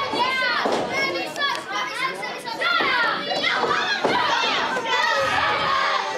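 Children in the crowd shouting and talking over one another, several high voices overlapping.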